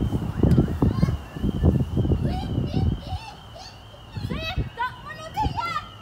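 Children's voices at a playground: high-pitched calls and chatter, clearest in the second half. Low, muffled rumbling on the microphone fills the first three seconds.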